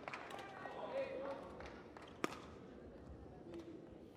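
Quiet sports-hall ambience between badminton points: faint, indistinct voices in the hall and scattered light taps on the court, with one sharper knock about two seconds in.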